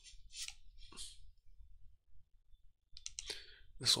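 A few short, sharp computer mouse clicks: a couple about a second in and a quick cluster about three seconds in.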